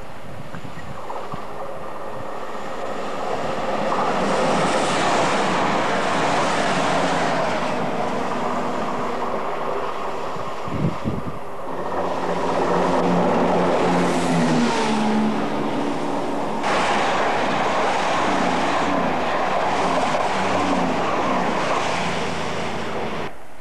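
High-speed trains passing close at line speed in separate shots: rushing wheel-on-rail and air noise, with a sharp knock at a cut about eleven seconds in. The later passes, the last a Virgin Voyager diesel multiple unit, carry a steady low engine hum under the rush.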